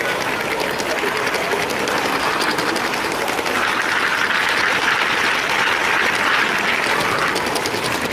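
LEGO train running along plastic track, a steady rattling clatter of wheels and motor with many fine clicks, over a background hubbub of voices in the hall.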